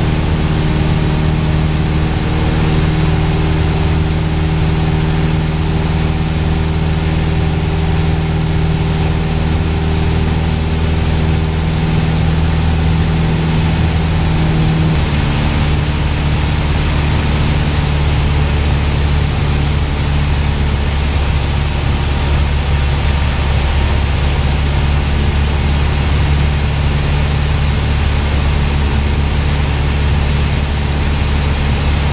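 Piper PA-28's piston engine and propeller droning steadily in flight, heard inside the cabin. Its tone changes abruptly about halfway through.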